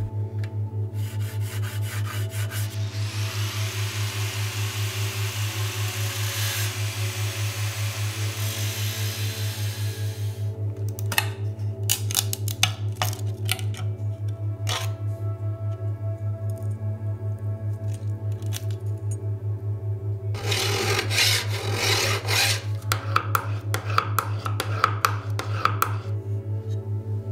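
Background music with a pulsing low beat. Over it, a fine-toothed hand saw cuts through a wooden dowel for several seconds. A few sharp clicks and taps follow, then rough rubbing or scraping strokes on wood and metal near the end.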